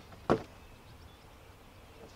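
A single short, sharp knock about a third of a second in, over faint outdoor background noise.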